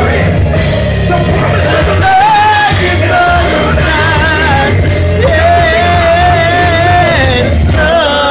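A man singing over a loud backing track with heavy bass, his voice wavering on held notes, with one long held note in the second half.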